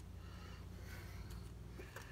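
Quiet room tone: a low steady hum with a few soft, faint handling rustles.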